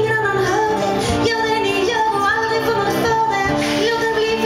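Live acoustic folk band playing, with a woman singing the melody over acoustic guitar, double bass and accordion.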